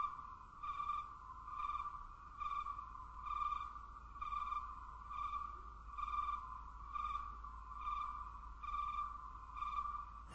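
Quiet pulsing electronic tone: a single pitch swells and fades about every 0.8 seconds, with a faint low hum under it.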